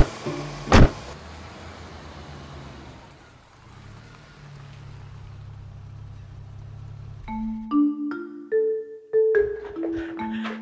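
Two sharp thuds, typical of car doors shutting, then a car engine running with a steady low hum. About seven seconds in, light mallet-percussion music notes take over.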